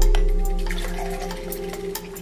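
Milk pouring into a drinking glass, over a held chord of background music that fades steadily away.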